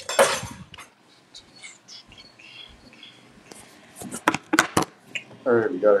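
Coffee cups being picked up and handled: a loud scuffing burst right at the start, then a quick run of sharp clicks and knocks of cups and crockery from about three and a half to five seconds in.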